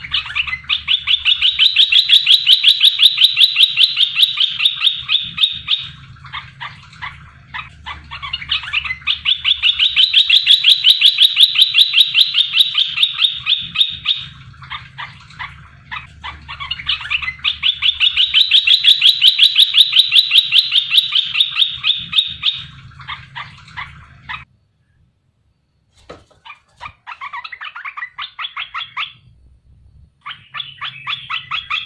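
A caged bulbul (merbah belukar) calling in long runs of rapid, evenly repeated notes: three runs of several seconds each, then a short break and shorter bouts of chatter near the end. It is a lure song (pancingan) meant to set other merbah belukar answering.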